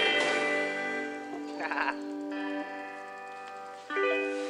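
Electric guitar notes ringing out and slowly fading, with a short wavering note about a second and a half in and a new note struck right at the end.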